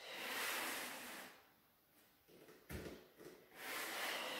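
A woman's breathing: a long breath out of about a second, then a pause, and another breath starting near the end. A single faint knock falls in the quiet between them.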